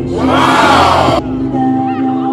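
A crowd screaming and cheering for about a second over steady dance music, the cheer cutting off sharply.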